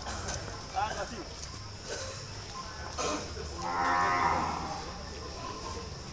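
Cattle mooing: one long low call lasting about a second and a half, beginning a little over halfway through, with a shorter sound about a second in.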